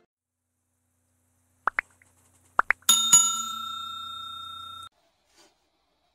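Two pairs of short rising pops, then a bell-like chime struck twice in quick succession. The chime rings on with a slow fade and cuts off suddenly after about two seconds.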